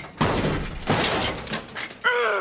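Film sound effects of a car crashing and tumbling: two sudden crashing impacts a little under a second apart, each trailing off in a rough, scraping noise.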